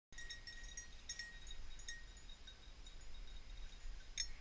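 A small bell on a running bird dog's collar jingling in a few scattered rings, thinning out as the dog slows, over a faint low rumble.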